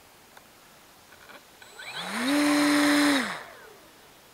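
Electric motor and propeller of an RC model plane briefly run up. A whine rises about two seconds in, holds a steady pitch for about a second, then falls away as the propeller winds down.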